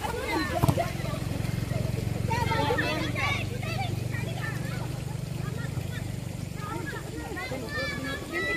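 Women players' voices calling out across a football pitch, with one sharp thump of a kicked ball a little under a second in, over a steady low rumble.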